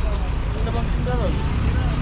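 Indistinct chatter of people passing by, over a steady low rumble.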